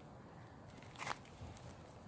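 Mostly quiet, with one short rustle about a second in as a hand brushes through bell pepper plants.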